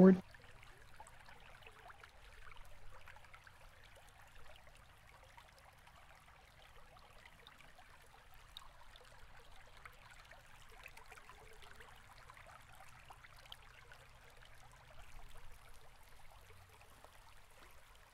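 Faint steady hiss of room tone, with soft rustles of thread and fiber dubbing being wrapped onto a hook in a vise, slightly louder about three seconds in and again near the end.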